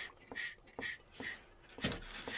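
Hand-operated brake-bleeding vacuum pump being squeezed in short, even strokes, about two a second, drawing vacuum on the catch jar at the bleeder screw.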